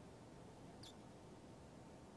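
Near silence: studio room tone, with one faint, brief high-pitched sound a little under a second in.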